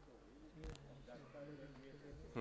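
Faint voices and room tone, with a single sharp click about two-thirds of a second in.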